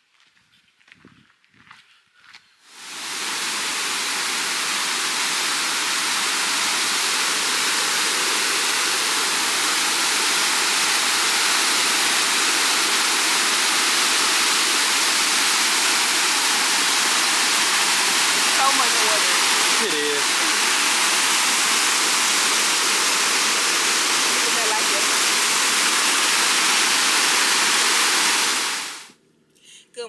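Waterfall: a steady, loud rush of water pouring over a rock ledge into a pool. It fades in a few seconds in and fades out near the end.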